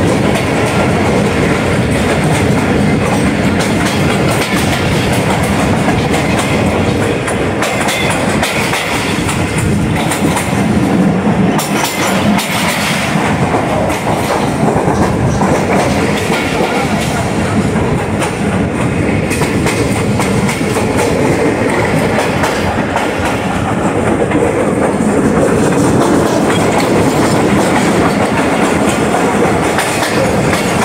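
Passenger coaches of the Tezgam Express running at speed, heard from the side of the moving train: a loud, steady rumble of wheels on rail, with the clickety-clack of wheels passing over rail joints.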